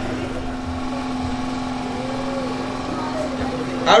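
A steady low hum, one unchanging tone, in a pause between speeches, with faint background voices.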